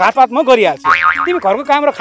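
A man speaking in an animated voice with his pitch swooping up and down, with a short springy comic sound effect about a second in.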